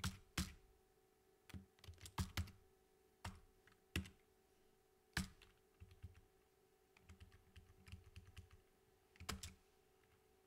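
Computer keyboard typing: irregular keystrokes with short pauses between them, and a quicker run of lighter taps a little past the middle.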